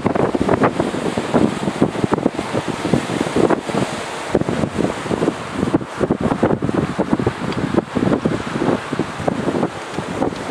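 Wind buffeting the microphone in uneven gusts, over the wash of small waves breaking on a rocky, pebbly shore.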